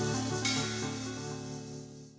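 The final chord of an alternative rock song, played by guitar, bass and drums, ringing out and fading away, with a light hiss over the sustained notes.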